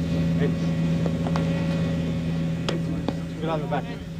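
A steady low hum with a few faint ticks, and a brief murmur of voices near the end.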